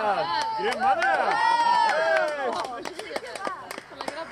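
Several people calling out and shouting, their voices overlapping, with long drawn-out calls and no clear words, over scattered short clicks.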